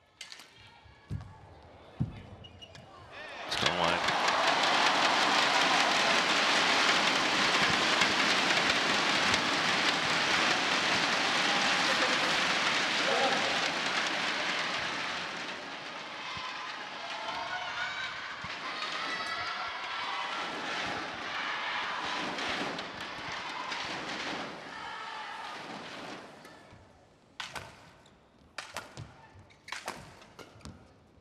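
Arena crowd cheering and applauding loudly for about ten seconds after the home player wins a point, then dying away with scattered shouts. Sharp smacks of badminton rackets striking the shuttlecock come a couple of times near the start and again near the end as play resumes.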